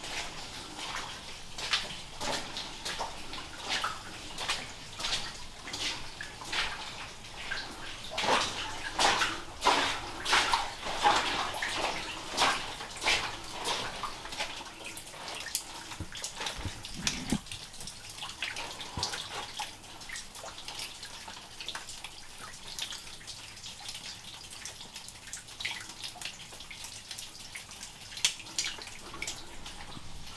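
Water dripping and splashing in a wet mine tunnel, in quick irregular splashes that are loudest and thickest about a third of the way through, then thin out.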